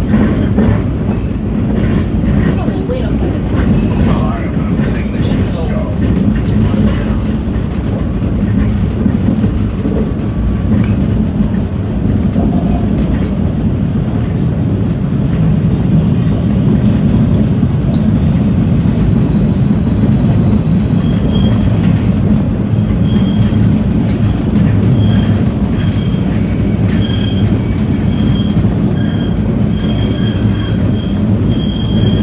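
Older MBTA Red Line subway car running, heard from inside the car: a loud, steady low rumble of wheels and motors. In the second half a thin high squeal comes and goes in short, repeated pulses.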